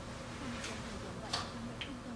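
Faint ticking, a few ticks about half a second to a second apart, over a low steady hum.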